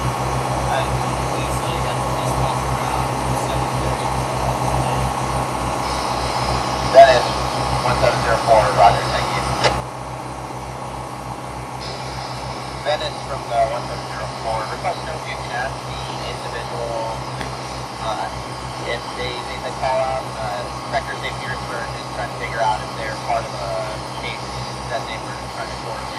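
Towboat's engine running steadily underway, a continuous drone with an even low pulse, dropping in level about ten seconds in. Voices come over the marine radio on top of it.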